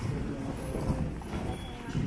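Footsteps and trekking-pole tips tapping irregularly on a hard station floor as a group of hikers walks off a ropeway gondola, over a low murmur of voices.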